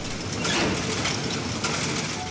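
Machinery running steadily, a dense, fast mechanical rattle.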